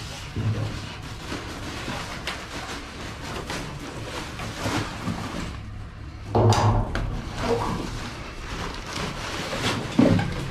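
Black plastic trash bag rustling and crackling as it is hooked with a reach pole and hauled up inside a steel dumpster, with scattered knocks and a louder thud about six and a half seconds in.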